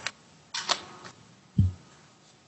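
Handling noise close to a meeting microphone: a short rustle, then a single dull low thump about a second and a half in.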